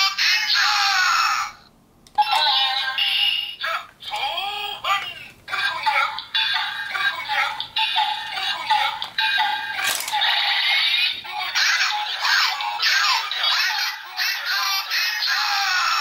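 Electronic sound effects, jingles and synthetic voice calls from a Power Rangers Ninja Force toy sword's built-in speaker, set off as its shuriken disc and buttons are worked. The sound is thin with no bass, and it breaks off briefly about two seconds in.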